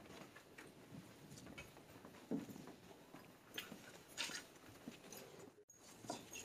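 Very quiet room tone with a few faint, scattered rustles and small clicks, and a brief dropout in the sound near the end.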